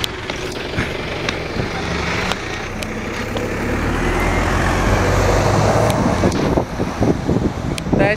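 A single-deck bus's engine running as it moves off from the stop right beside the listener and heads away, a low drone with road noise that builds to its loudest about four to six seconds in. A few sharp clicks come through.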